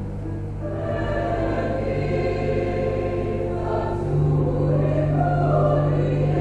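Choir singing a slow hymn in long held chords, the lower voices moving to new notes about two seconds in and again about four seconds in.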